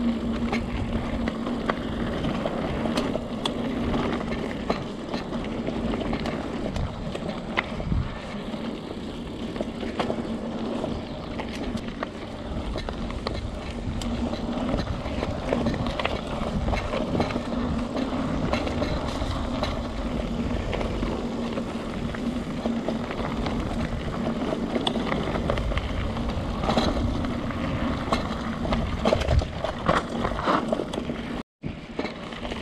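Mountain bike ridden fast over a dirt forest trail: a steady rumble of tyres and riding noise with frequent short knocks and rattles as the bike goes over bumps, and a steady low hum underneath.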